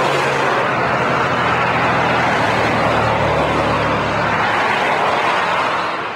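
A car's engine and road noise, steady, with a low engine hum under it, easing off slightly near the end.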